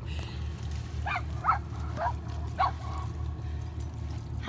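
A dog giving four short, high yips about half a second apart, starting about a second in, over a steady low rumble.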